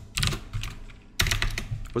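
Computer keyboard typing: two quick runs of key clicks, a short one just after the start and a longer one from a little over a second in.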